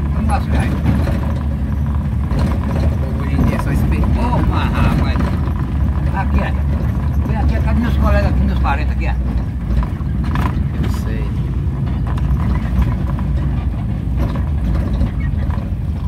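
Car engine and road noise heard from inside the cabin while driving slowly through town streets: a steady low rumble, with low voices now and then.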